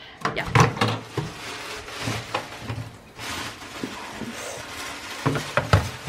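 A plate and dishes knocking and clattering as food is put into a microwave, with clusters of sharp knocks near the start and again near the end.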